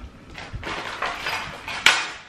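Small items being handled and packed into a bag: light knocks and rustle, with one sharp click near the end.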